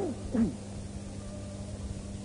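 Two short falling vocal cries within the first half second, the second louder, over a steady electrical hum and tape hiss. The cries are typical of listeners calling out in a pause of a live Quran recitation.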